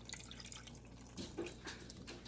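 Enchilada sauce pouring from a tipped can onto enchiladas in a glass baking dish: faint dripping and splashing of liquid.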